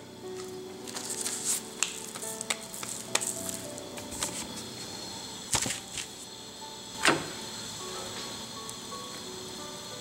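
Soft background music over a faint steady hiss. Two light knocks come around the middle, as the rolled millet roti is lifted and laid onto a nonstick griddle.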